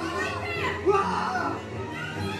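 Cartoon character voices calling out in alarm over background film music.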